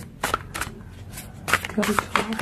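Tarot cards being handled against the deck: several short, sharp card clicks and snaps, a few in the first half second and a second cluster about a second and a half in.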